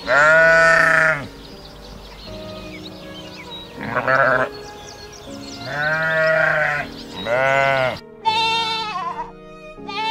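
An animal bleating five times in loud, drawn-out calls, one about four seconds in with a wavering quaver and the last one higher-pitched and falling. Soft piano music plays steadily underneath.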